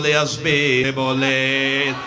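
A preacher's voice chanting in a slow melody: a short sung phrase, then one long held note that stops just before the end.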